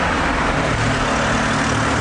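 Street traffic noise with a motor vehicle engine running close by. A steady low hum sets in about half a second in and holds.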